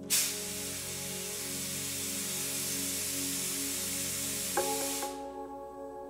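Live ambient electronic music: sustained, gently pulsing synth tones, with a hiss that cuts in suddenly and lasts about five seconds before fading away. Near the end a struck note rings on over the drone.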